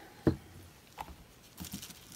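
Handling noise from paint cups and supplies on a work table: one sharp knock shortly after the start, a softer click about a second in, and a few faint clicks near the end.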